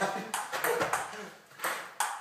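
Table tennis rally: a ping pong ball clicking back and forth off the paddles and the table in quick, uneven strikes, with a short gap before a last hit near the end.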